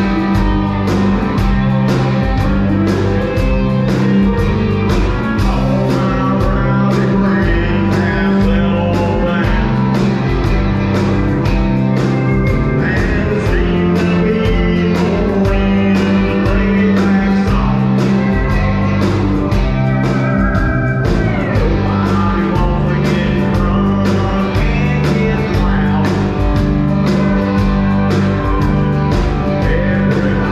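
Live rock band playing: electric guitars, bass and drum kit with a steady beat, amplified through a stage PA.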